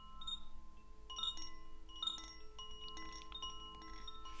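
Chimes ringing: many notes of different pitches struck at irregular moments and left to ring on over one another.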